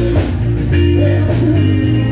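Live blues-rock band playing an instrumental stretch: electric guitar over bass guitar and a drum kit.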